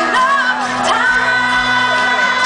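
A country-pop band playing live, with a woman singing the lead over guitars, heard from far back in a large amphitheatre.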